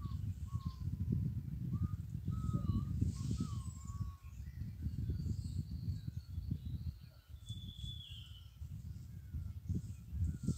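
Wild birds calling in the forest: a run of short, curving whistled notes over the first four seconds, then a higher drawn-out call about eight seconds in. Underneath, a steady low rumble on the microphone.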